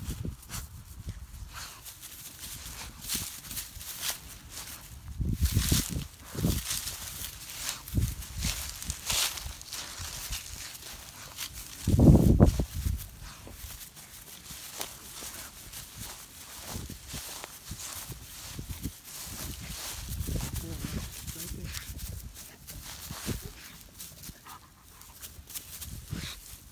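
Footsteps crunching and rustling through dry grass as a person and a leashed tracking dog walk along, with a louder low thump about halfway through.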